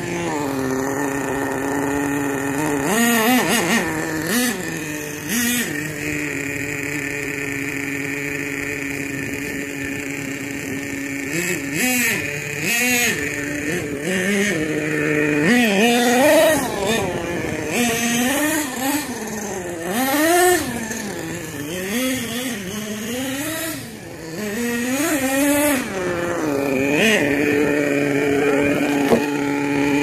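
HPI Savage 25 nitro RC monster truck's small two-stroke glow engine running at a fairly steady pitch for several seconds, then revved up and down over and over in quick rises and falls through the rest of the stretch.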